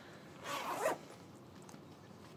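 A single short rasping swish from the pink patent-vinyl thigh-high boots, their zip or vinyl shafts, lasting about half a second, starting about half a second in.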